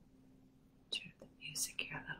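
A woman whispering softly, with hissy breath sounds, starting about a second in over a faint steady hum.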